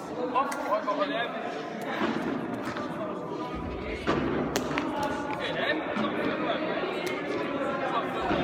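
Children's voices chattering in an echoing sports hall, with several sharp knocks of a ball bouncing on the floor and being caught.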